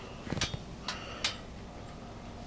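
Three or four light clicks and taps, spaced less than a second apart, over faint background noise.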